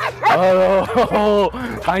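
Dogs barking excitedly at a ball: about four drawn-out barks in quick succession, each lasting about half a second.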